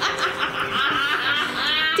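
Girls laughing hard, in high-pitched peals.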